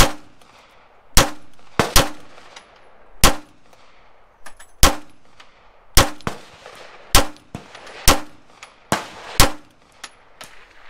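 A handgun fitted with a red-dot sight is fired about a dozen times at uneven spacing, some shots in quick pairs, each crack with a short ringing echo. These are test shots to check the sight's zero at five yards.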